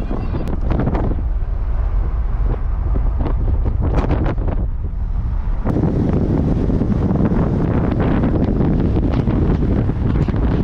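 Wind buffeting the microphone from a moving car, over a steady low road rumble. It grows louder and rougher about six seconds in, and a few short knocks come earlier.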